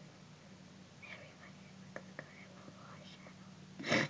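Faint whispering over a steady low room hum, with two small clicks about two seconds in; louder speech starts right at the end.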